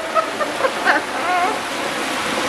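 Hot peanut oil in an electric turkey fryer bubbling and sizzling steadily as a whole turkey is lowered into it in its wire basket.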